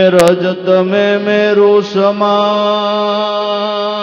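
A man singing a devotional bhajan in long, held, ornamented notes, accompanied by a harmonium. The voice comes in loudly at the very start, with two sharp clicks just after.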